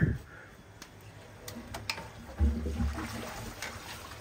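Plastic clicks and knocks from the handle of a pond filter's multiport valve being worked toward the backwash setting, with water moving through the filter plumbing. A low hum comes in for about a second in the second half.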